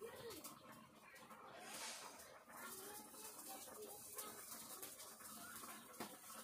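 Faint, scattered whining calls of an animal, short pitch glides up and down, over quiet room tone.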